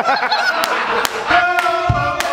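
Laughter, then music with held notes and sharp drum hits comes in about one and a half seconds in.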